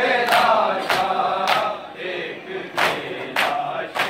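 A crowd of Shia mourners doing matam: many men beating their chests in unison, making sharp slaps about every half second, over a chanted noha sung by many men's voices that is strongest in the first half.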